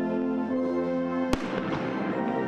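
Military brass band playing slow, held chords, cut across a little over a second in by one sharp blast of a ceremonial salute gun that echoes away under the music.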